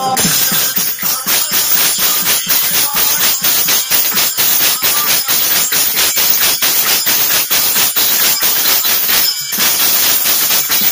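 Fast, even percussion accompanying a stage dance, about five strokes a second with a bright, jingling top. It breaks off briefly near the end.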